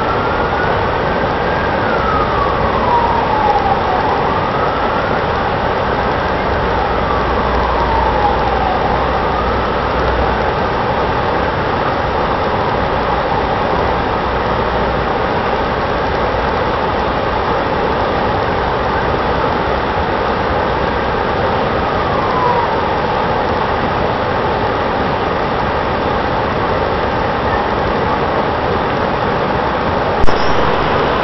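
An emergency-vehicle siren wailing, rising and falling in slow cycles of about four seconds, fading away about two-thirds of the way through. Underneath is the steady rush of the fountain's water jets.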